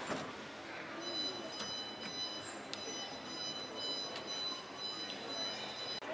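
A few light clicks and knocks of kitchen drawers being opened and handled, over a murmur of voices and a steady high electronic whine from about a second in.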